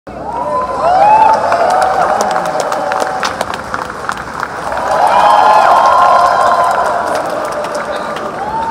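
Concert audience cheering and calling out, with scattered clapping. The cheering swells about a second in and again around five seconds in.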